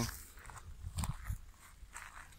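A few footsteps crunching on gravel track ballast, the loudest about a second in, over a low steady rumble of wind on the microphone.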